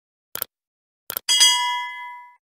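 Subscribe-button animation sound effect. There is a short effect about half a second in, then a quick double mouse click just after a second. A bright notification-bell ding follows and rings on, fading, past the end.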